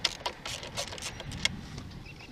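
Irregular metallic clicks and clinks of a 9/16 wrench working the negative terminal nut on a car battery as it is loosened, with the sharpest clicks at the start and about one and a half seconds in.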